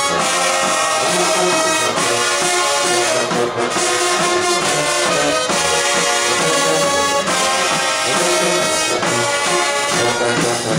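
High school marching band playing, led by trumpets and trombones, in loud held chords that change every second or two.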